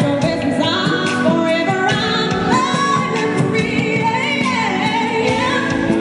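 A woman singing a pop song live with a band, electric bass among the instruments, the sung melody gliding up and down over a full, steady accompaniment.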